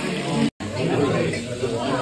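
Voices talking and chattering in a restaurant dining room, cutting out briefly about half a second in.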